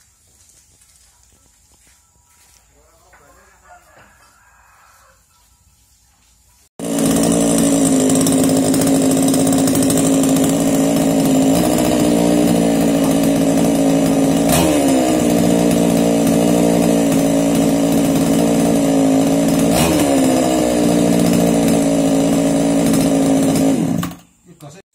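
Small two-stroke chainsaw engine running steadily and loud. It comes in suddenly about seven seconds in after a quiet stretch, with three brief dips in speed, and stops abruptly at the end.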